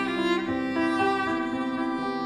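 Violin playing a bowed melody in an instrumental passage, moving from note to note about every half second, with lower held notes sounding beneath it.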